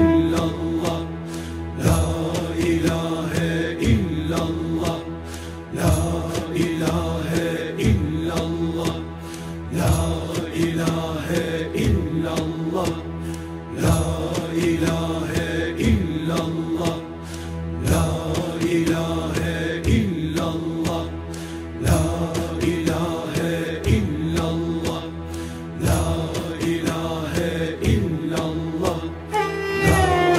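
Sufi zikir in makam Uşak: a rhythmic repeated chant, swelling about every two seconds over a sustained drone.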